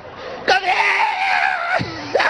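A person's voice letting out one long, high-pitched shout, starting suddenly and held for over a second before its pitch drops away.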